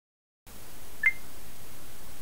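A single short electronic beep, stepping up slightly in pitch, about a second in, over a steady hiss of room noise that starts abruptly after a brief silence.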